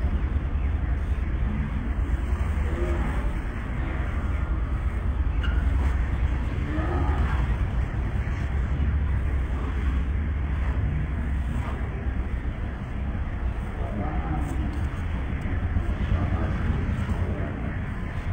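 Indistinct voices of a gathering of people talking quietly, over a steady low rumble.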